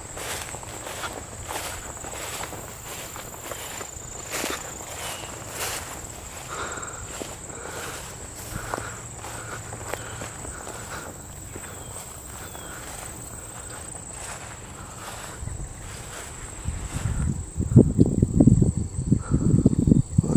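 Footsteps through tall grass and brush, with the stalks rustling against the legs, under a steady high-pitched tone. From about three seconds before the end, a louder low rumbling on the microphone takes over.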